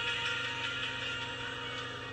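Music with singing playing from a television speaker, heard through the room, fading out, over a steady low electrical hum.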